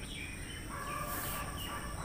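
Faint birds calling in the background: short chirps, and about halfway through a longer held call lasting about a second.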